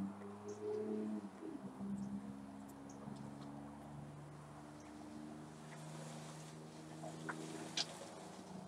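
Soft draws on a tobacco pipe as it is relit with a Zippo pipe lighter held over the bowl; the nearly spent bowl is hard to keep lit. A steady low hum runs underneath, and a couple of faint clicks come near the end.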